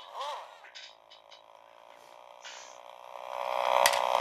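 The battery electric motor of a Schuco Elektro Porsche 917 tin toy car runs with a steady whine that swells over the last second as it is revved up. A few light clicks of handling come early on.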